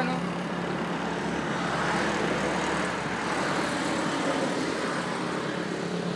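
Steady road traffic noise, swelling slightly a couple of seconds in.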